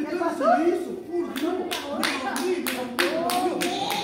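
Steady handclaps, about three a second, starting a little over a second in, over voices in a large hall.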